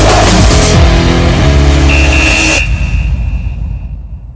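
Sports-segment intro music of a TV news bulletin: a loud electronic theme with heavy bass and a noisy sweeping layer, which cuts off about two and a half seconds in, leaving a single high tone that fades away.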